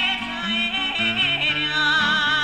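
A woman singing long held notes with heavy vibrato, accompanied by an acoustic guitar playing low, stepping bass-note runs.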